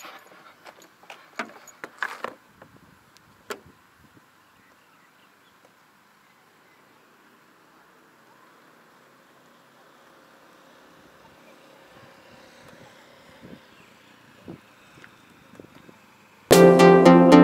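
Handling noise: a run of sharp clicks and knocks over the first few seconds, then a faint steady outdoor hiss with two light taps near the end.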